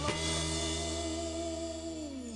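Live soul band with horns hitting a chord on a cymbal crash, then holding it as one steady sustained chord.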